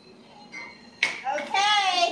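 A sharp click or clap about a second in, then a loud, high-pitched voice near the end.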